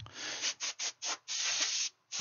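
Air blown in hissing blasts to clear dust off an open laptop's board: a short blast, three quick puffs, then a longer blast.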